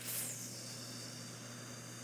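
Quiet room tone: a steady hiss with a faint low mains hum beneath it.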